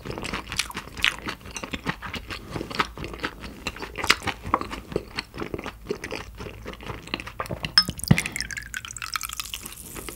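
Close-miked chewing of sticky raw beef slices, with many quick, irregular wet mouth clicks. A single sharper click comes about eight seconds in, after which the chewing sounds thin out.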